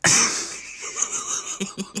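A person's wheezing, breathy laugh starts suddenly and loud, then fades over about a second. Short rhythmic pulses of laughter follow near the end.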